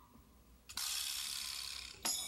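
Sparse percussion: a ringing metallic stroke dies away, then about three-quarters of a second in a steady rasping, hissing noise starts suddenly and holds for over a second.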